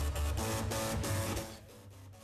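Floppy disk drives playing a tune, their head stepper motors buzzing out pitched notes that step from one to the next. The buzzy sound is described as a floppy drive "in agony". It drops away near the end.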